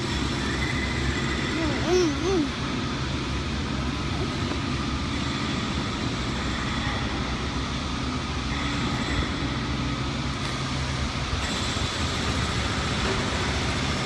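Steady city street traffic with the low, even hum of idling and passing engines, a truck among them. A brief voice sounds about two seconds in.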